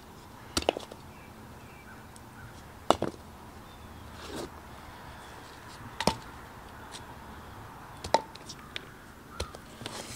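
Sharp knocks of wooden boards and blocks being handled and set down, about six separate knocks a second or more apart, a few with a short ring.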